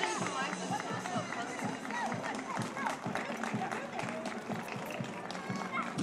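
Music playing in the open street, mixed with the chatter of many spectators' voices.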